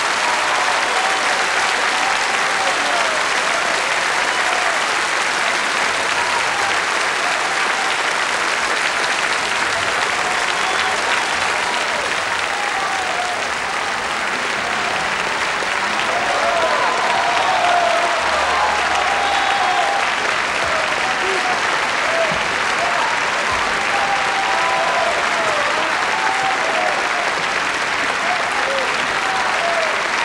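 Opera-house audience applauding steadily during a curtain call, with voices calling out here and there over the clapping.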